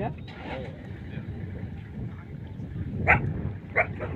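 A man's voice saying "ja, ja" and, near the end, "ja" again, over a steady low rumble.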